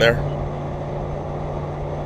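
Steady drone of a vehicle cruising at highway speed: engine hum and road noise, with a constant low tone underneath.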